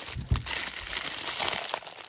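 Clear plastic packaging crinkling as it is handled, with a knock near the start.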